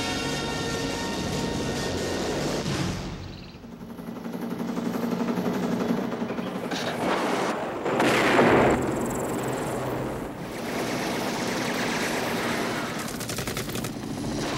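Action-film soundtrack: music fades out after about three seconds and gives way to battle sound effects. A loud explosion just past the middle is the loudest moment, and a rapid burst of gunfire comes near the end.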